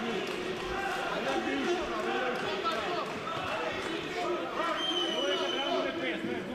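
Boxing-match crowd, many voices talking and shouting at once in a hall.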